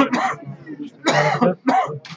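Men's voices close by in indistinct talk, with a cough.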